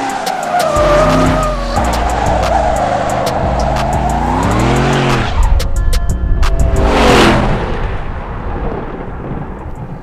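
Hennessey H650 supercharged 6.2-litre V8 Cadillac Escalade revving hard with tyres squealing as it spins donuts, the engine note rising and falling. It peaks as the SUV drives past about five to seven seconds in, then fades toward the end.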